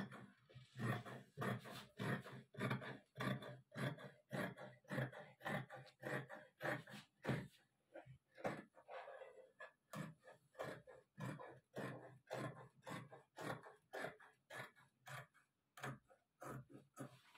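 Scissors cutting through folded fabric along a chalk line: a steady run of short crisp snips, about two to three a second.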